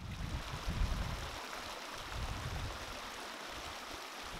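Shallow mountain creek running steadily over gravel and rocks, with a gusty low rumble of wind on the microphone.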